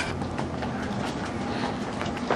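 Steady low rumble and hiss of outdoor background noise, with faint light footsteps as someone comes down concrete steps.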